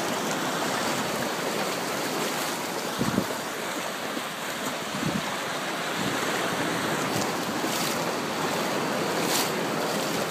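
Ocean surf washing steadily over the shallows, with wind buffeting the microphone in a couple of low thumps about three and five seconds in.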